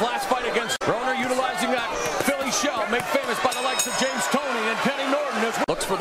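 Speech: voices talking throughout, broken by two brief dropouts where the highlight edits cut.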